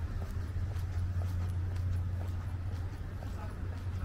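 Footsteps on stone paving at a steady walking pace, about two steps a second, over a steady low hum.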